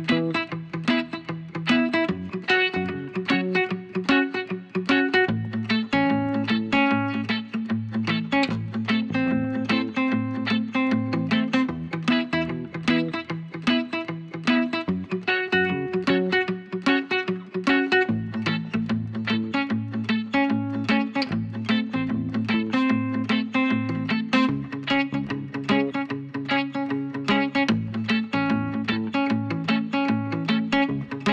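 Background music led by plucked guitar, with a steady stream of quick notes over a held bass line.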